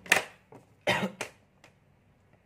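A man coughing twice, about a second apart, followed by a faint click.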